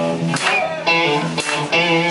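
Live band playing, led by strummed electric guitar chords.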